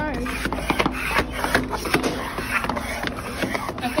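Sliding foot pad of a skating exhibit rattling and clicking irregularly along its metal track, with voices in the background.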